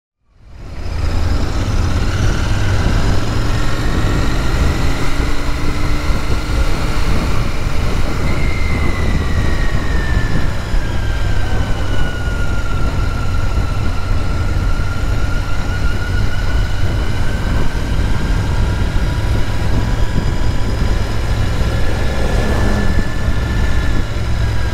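Royal Enfield Interceptor 650 parallel-twin motorcycle being ridden through town traffic, its engine running under a steady wind rumble on the bike-mounted camera's microphone. The sound fades in over the first second.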